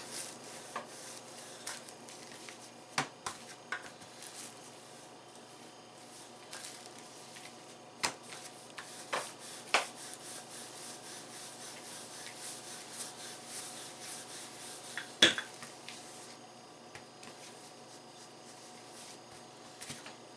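Wooden rolling pin rolling out bread dough on a table: a soft, steady rubbing, broken by a few light knocks, the loudest a little past the middle.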